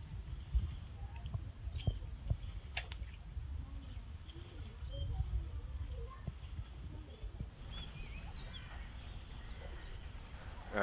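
Outdoor ambience: an uneven low rumble of wind on the microphone, with a few light knocks and faint, brief bird chirps.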